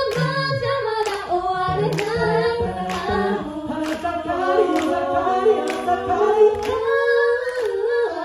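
A mixed five-voice a cappella group singing in Japanese in close harmony, with a sung bass line and a steady beat of vocal percussion about once a second. The bass line drops out about halfway through, leaving held chords in the upper voices.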